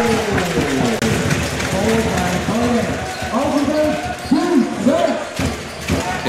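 Basketball arena sound during play: voices in the hall calling out in rising and falling shouts, loudest in the second half, with basketball bounces on the hardwood court.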